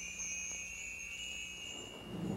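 Two faint, steady high-pitched tones, one well above the other, held over a quiet lull between songs.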